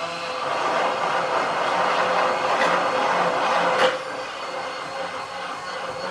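Hand-held immersion blender running steadily in a glass jug, whirring as it blends tahini, roasted garlic, lemon juice and oil into a thick emulsified sauce. The sound drops a little about four seconds in.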